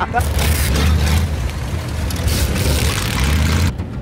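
A vehicle engine running close by: a loud, steady low rumble under a broad rushing noise. It cuts off abruptly near the end.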